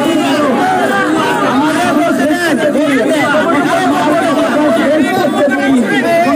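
A man speaking loudly into a handheld microphone over a crowd, with other voices chattering around him.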